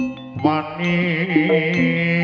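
Javanese jaranan gamelan music: a few struck metallophone notes ring, then about half a second in a sustained, wavering lead melody comes in and carries on over the ensemble.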